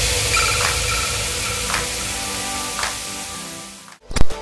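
Edited transition sound effect: a hiss of static-like noise with faint musical tones and soft swells about once a second, slowly fading out.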